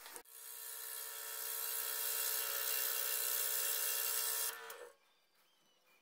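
Scroll saw cutting through a laminated wood handle blank. The sound builds over the first second or two, runs steadily as a hum under a hiss, and stops abruptly about three-quarters of the way through.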